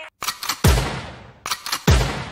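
Added sound effects in the edited soundtrack: a few sharp clicks, then a deep boom with a long decaying tail. This happens twice, a little over a second apart.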